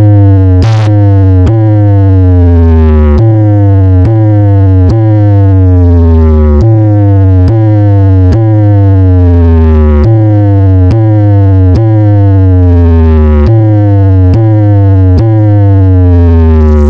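Bass-heavy electronic sound-check track played loud through a large DJ speaker rig. A siren-like falling synth tone restarts with a click a little more than once a second, over deep, sustained bass notes that shift every few seconds.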